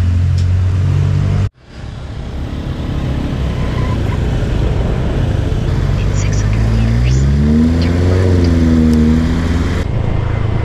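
Motor scooter engine running under way, with wind rush on the microphone. The sound cuts out abruptly about one and a half seconds in; in the last few seconds the engine pitch rises as the scooter accelerates, then levels off.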